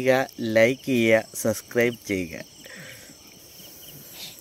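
Crickets chirping steadily, with a man talking over them for the first two seconds or so, after which the crickets go on alone.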